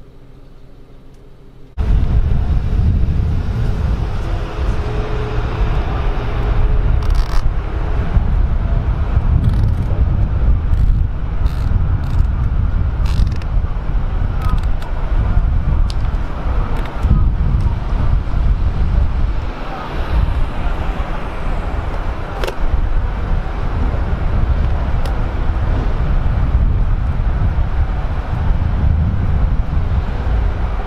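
Roadside street noise: a loud, steady low rumble of wind on the microphone and passing traffic, which starts suddenly about two seconds in after a quiet start, with a few faint clicks and rattles scattered through the middle.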